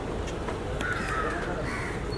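A crow cawing about a second in, with a fainter call near the end, over a low steady background.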